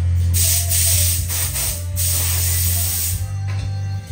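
A spray hissing for about three seconds, with a brief dip about two seconds in, over background music with a steady bass.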